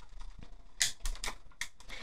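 Die-cutting machine drawing a die and cutting plates through its rollers as the die cuts designer paper, giving a few irregular sharp clicks and creaks.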